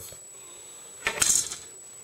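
Brief handling noise: one short clatter about a second in, lasting under half a second, as things are moved about by hand.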